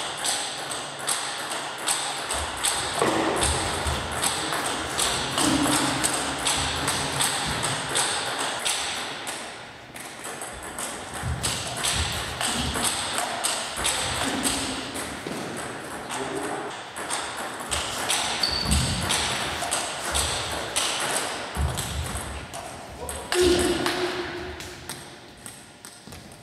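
Table tennis ball struck back and forth by bats and bouncing on the table, many sharp clicks in quick succession, with voices in the hall behind.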